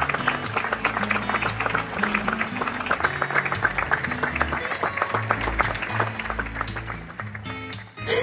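Audience applauding, a dense clapping that starts suddenly and dies away near the end, over a background music track with guitar.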